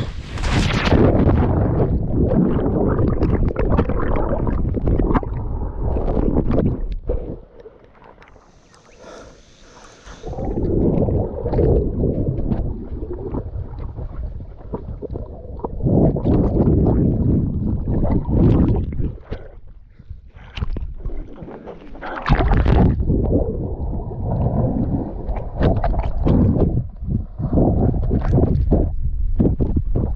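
Splash as an action camera plunges into lake water, then muffled underwater rumbling and gurgling from a swimmer moving around it. The noise drops to a faint hiss twice, about a quarter of the way in and again past two-thirds.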